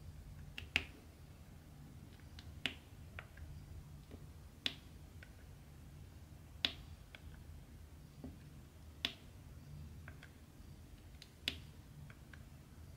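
Diamond-painting drill pen setting round drills onto the canvas one at a time: a sharp click about every two seconds, with fainter ticks in between.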